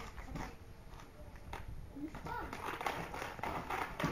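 Inline skate wheels rolling on rough concrete, with a few sharp clicks and taps from the skates in the first half and a rougher rolling hiss building toward the end.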